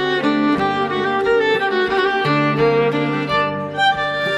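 Background music: a Swedish folk fiddle tune played on bowed fiddles, a moving melody over long-held low notes.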